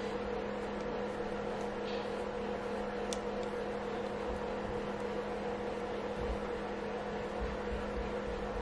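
Steady mechanical hum in the room, even in level throughout, with a single faint tick about three seconds in.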